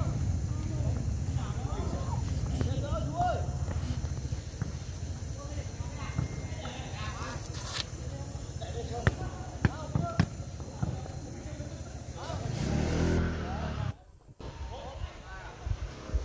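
Football players shouting and calling to each other across an outdoor pitch, with a few sharp thuds of the ball being kicked about nine to ten seconds in, over a steady low rumble. The sound drops off suddenly near the end as the recording cuts.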